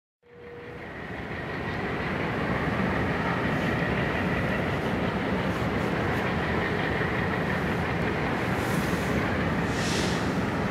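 Diesel locomotive running as it approaches slowly: a steady engine rumble with a faint high whine above it. The sound fades in over the first two seconds, then holds steady.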